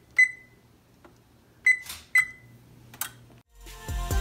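Electric range's digital oven keypad beeping three times, short high beeps, as the preheat temperature is keyed in. Background music with a beat comes in near the end.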